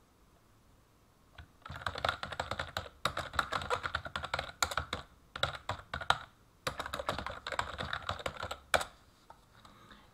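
Fast typing on a computer keyboard: a dense run of key clicks that starts about a second and a half in, with a couple of short breaks, and stops about a second before the end.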